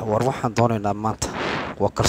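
A man's voice talking in short phrases close to a microphone, with a breathy hiss about halfway through.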